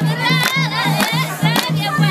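A group of women ululating with wavering high calls over wedding music that has a steady quick low drum beat and sharp claps or hits about twice a second.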